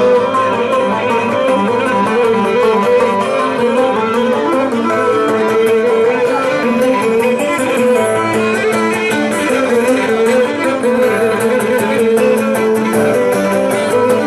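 Live Cretan folk dance music on string instruments: plucked strings carry a fast running melody over a steady rhythm, with a bowed string beneath.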